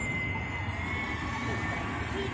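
City street traffic: a car drives past close by near the end, over a low traffic rumble and a faint steady high-pitched tone, with a brief bump at the very start and voices in the background.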